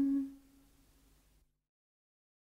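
A woman's unaccompanied voice holding the final steady note of a folk lullaby. The note fades out about half a second in and leaves silence.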